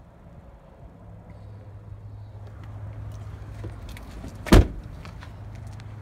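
Handling and movement noise around a Ford F-150 pickup's cab, with light clicks and a single loud door thud about four and a half seconds in, over a low steady hum.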